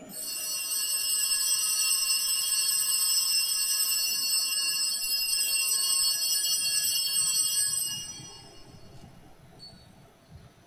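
Altar bells rung at the elevation of the chalice after the consecration: a cluster of high, bright ringing tones held steady for about eight seconds, then dying away.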